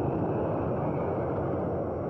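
Blast wave striking a house on a documentary soundtrack: a loud, steady rushing rumble with no separate bangs, as the building is torn apart and debris flies.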